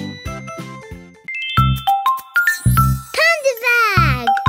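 Children's cartoon music: a tune with bass fades out over the first second, then bright chime-like jingle notes start a new tune, with a long falling glide near the end.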